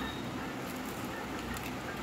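Crisp deep-fried papad roll crackling softly and evenly as it is broken apart by hand.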